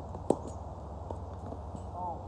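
A tennis ball struck hard by a racket on a forehand, one sharp crack about a third of a second in, followed by a few faint ticks of a ball bounce or footsteps on the hard court, over a steady low rumble.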